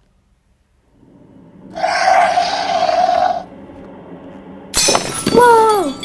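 Movie sound effects: a dinosaur roar lasting about a second and a half, starting about two seconds in. Near the end a sudden crash with breaking glass as the Jeep is knocked over, followed by a short high scream that falls in pitch.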